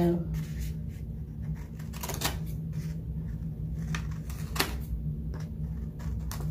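Sublimation transfer paper being handled and trimmed, with a few short, sharp paper sounds, the clearest about two seconds and four and a half seconds in. A steady low hum runs underneath.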